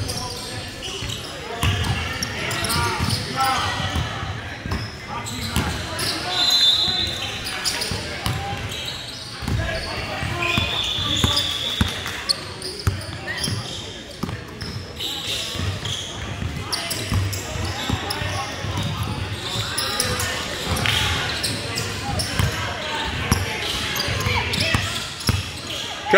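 Basketball being dribbled and bounced on a hardwood gym court in a large echoing hall, with players' and spectators' voices throughout and a couple of short high squeaks about six and eleven seconds in.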